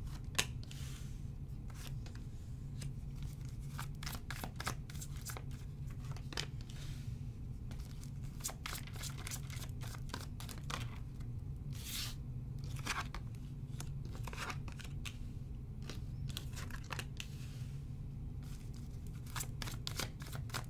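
A tarot deck being shuffled by hand and cards dealt onto a table: a run of sharp card snaps and papery rustles, with a steady low hum underneath.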